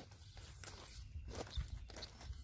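Footsteps on the wooden boards of a dock: a few irregular dull thumps.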